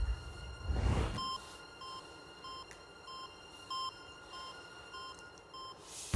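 Game-show heart-monitor sound effect: short electronic beeps at an even pace of about one every 0.6 s, roughly the contestant's on-screen pulse of about 100 beats a minute. A low thump comes about a second in, before the beeps begin.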